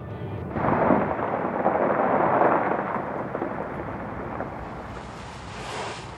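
Car tyres crunching and rolling over gravel and dirt as the car pulls in, a rushing noise that swells about half a second in and slowly fades.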